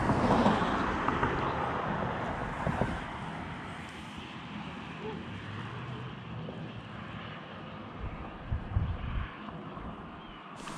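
Road traffic on the bridge overhead: a vehicle passing, loudest at the start and fading over the first few seconds into a steady low rumble. A few low thumps come near the end.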